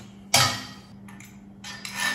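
A sharp metal clank with a short ringing tail about a third of a second in, as the steel hand winch is set onto its mount on the steel log skidding arch, then a softer metal knock near the end.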